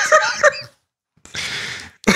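A man's laughter trailing off in the first half-second, then after a short silence a breathy exhale lasting about half a second.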